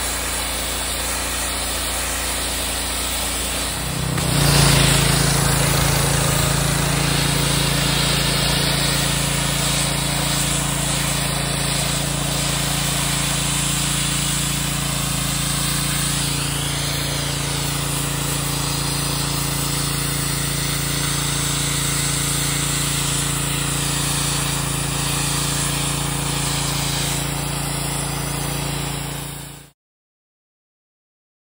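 Ryobi 2900 PSI gas pressure washer's 212 cc engine running under load while the wand sprays water against a cinder-block wall, a steady engine note under the hiss of the spray. It steps up in level about four seconds in and cuts off suddenly near the end.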